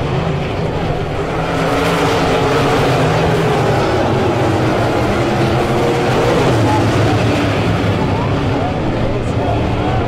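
A field of dirt-track modified race cars running together on pace laps, their V8 engines a loud, steady drone that gets a little louder about a second and a half in as the pack comes by.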